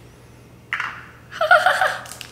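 A short sniff a little under a second in, as a tube of powdered sour candy is smelled up close, followed by a brief vocal sound near the end.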